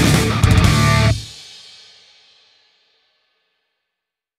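Rock song with guitar and drums ending on a final hit about a second in; the last chord and cymbal ring out and fade away over about a second and a half.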